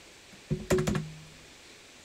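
A short burst of computer keyboard keystrokes: about four quick clicks, roughly half a second to a second in.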